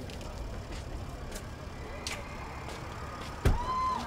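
Steady low rumble of vehicles at a street curb, with a few scattered sharp clicks. Near the end a sudden loud thump, followed by a short, high held note.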